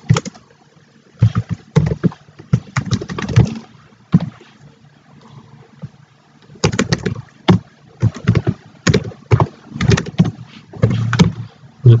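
Typing on a computer keyboard: runs of quick keystroke clicks in two bursts, with a pause of about three seconds between them.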